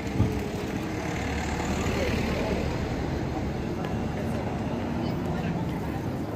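Busy pedestrian street ambience: a steady low rumble under a mix of passers-by's voices and general street noise.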